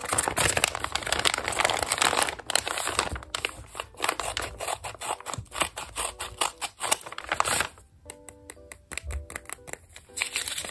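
A handmade paper blind bag crinkling as it is handled, with scissors snipping its top open. Soft background music comes through more clearly near the end, once the paper noise drops away.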